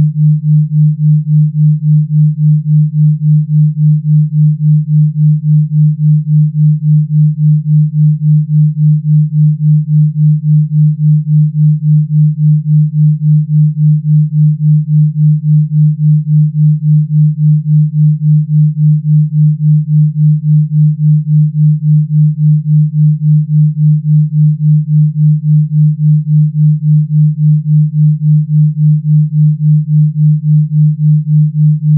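Electronically generated pure sine tone, low in pitch and held steady, with its loudness pulsing evenly about three times a second.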